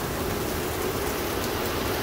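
Heavy downpour of rain, a steady hiss of rain falling on a soaked lawn, puddles and pavement.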